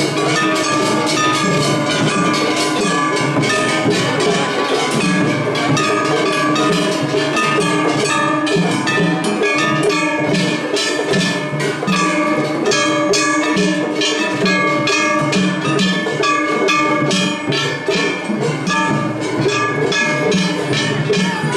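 Matsuri hayashi from several festival floats playing at once in a drumming contest. Hand gongs (kane) are struck in a rapid, continuous clanging over pounding taiko drums.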